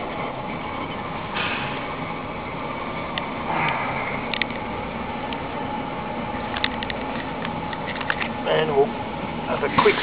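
Kroll wood gasification boiler running in log mode: a steady whoosh of its combustion-air blower fan and the fire, with a few faint ticks in the middle.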